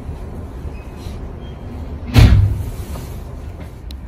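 Steady low rumble inside a stopped electric commuter train, with one sudden loud thump about two seconds in.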